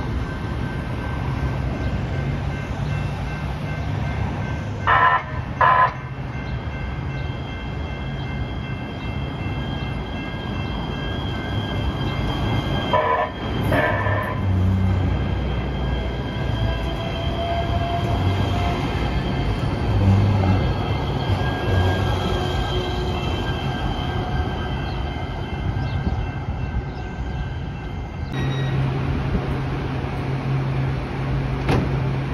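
LA Metro light-rail train pulling into a station: two short horn blasts about five seconds in and two more around thirteen seconds, over a low rumble and a steady high whine that cuts off shortly before the end as the train stops.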